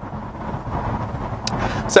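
Steady road and wind noise inside a car cabin while driving at speed, with a brief click about one and a half seconds in.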